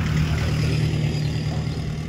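An engine or motor running steadily nearby, heard as a continuous low hum.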